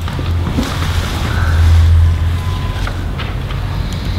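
A steady low rumble, swelling to its loudest about halfway through.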